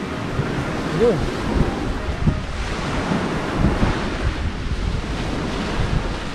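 Wind buffeting the microphone in low gusts over a steady rush of waves breaking on the shore.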